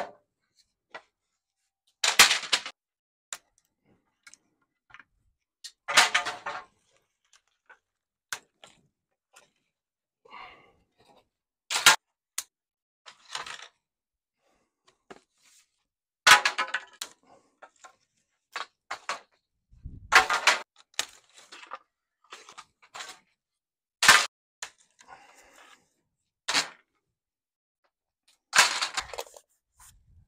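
Dry river canes from a pergola cracking and clattering down onto stone paving as the sunshade is pulled apart: about eight sharp crashes a few seconds apart, each with a short rattle, and lighter knocks between them.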